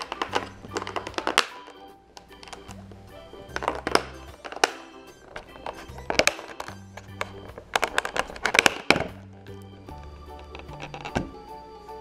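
Background music with a low bassline stepping from note to note. Over it come irregular knocks and clatters of a clear plastic container and its lid being handled and pried open by hand, loudest in a cluster near the end.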